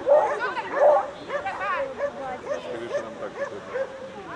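A beagle barking and yipping over and over, short high calls a few times a second, loudest in the first second.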